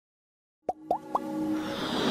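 About a second of silence, then three quick upward-gliding blips in a row, followed by a swelling whoosh that builds up: the sound effects of an animated outro.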